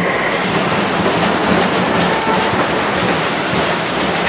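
Audience applauding steadily: a dense, even clatter of many hands clapping.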